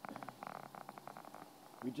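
A rapid run of small clicks, about a dozen a second for roughly a second and a half, from a tomato vine being clipped and drawn up onto its trellis.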